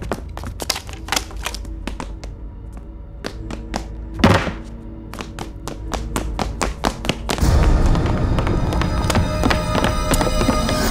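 Tense film background score driven by a rapid string of sharp thudding hits, about three or four a second, with one louder hit about four seconds in. About seven seconds in the music grows louder and fuller.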